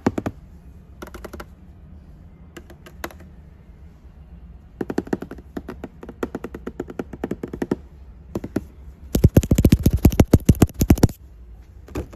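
Fingertips tapping rapidly on toy packaging, cardboard boxes and clear plastic blister windows, in quick bursts of many taps a second. The loudest burst, with a deeper thud to each tap, comes about nine seconds in and lasts about two seconds.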